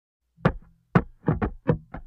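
Intro jingle music opening with a run of sharp percussive hits, about six in two seconds, each dying away quickly.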